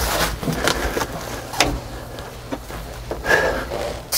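Foil-faced insulation padding being pressed and handled by hand on a truck cab floor: rustling and crinkling with a few sharp taps.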